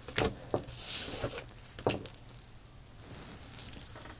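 Thin metal bangles clinking on a moving wrist while an oracle card is slid into place on a cloth-covered table: a few light clinks and taps in the first two seconds, with a soft sliding hiss.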